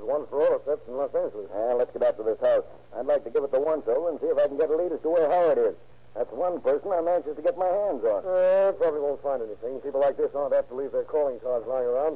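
Speech only: men talking in an old radio-drama dialogue, over a steady low hum. About eight and a half seconds in, one voice holds a drawn-out, wavering sound.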